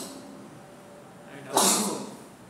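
A person sneezing once near the end, a short, loud, hissing burst.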